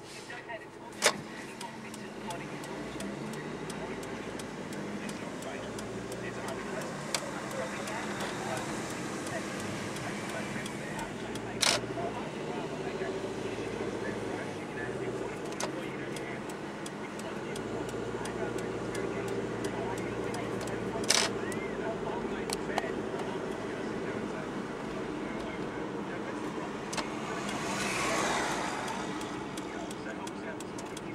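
Steady engine and road noise heard from inside a car while driving, with a few sharp clicks spread through and a swell of noise that builds near the end.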